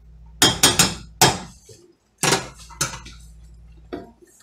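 A metal spatula knocking against a stainless steel cooking pot: six sharp clinks, three in quick succession in the first second, another just after, then two more about half a second apart.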